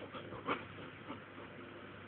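Faint, brief sounds from an Old English Sheepdog puppy, with one short noise about halfway through, while she waits on a sit command.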